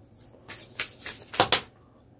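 A deck of tarot cards being shuffled and handled: a quick run of papery flicks starting about half a second in, the loudest a little past the middle.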